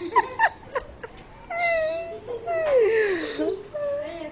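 High-pitched children's voices: a quick run of short squeals and cries, then a held call and a long falling, whining cry near the end.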